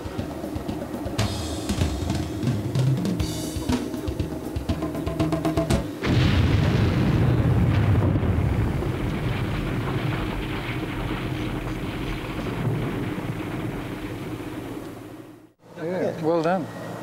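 Music with drums, and about six seconds in a sudden loud blast with a low rumble that fades slowly over several seconds: an underwater demolition charge destroying a torpedo.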